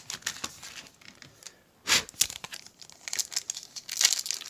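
Foil trading-card pack wrapper crinkling as it is handled and torn open, with one sharp rip about halfway through and denser crinkling near the end.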